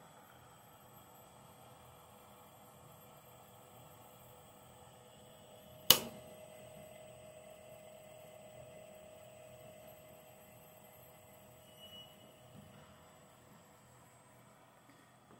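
Showmark UniSpooler wire respooler running quietly while winding very fine 50-gauge wire: a faint, steady hum with thin steady tones. A single sharp click about six seconds in.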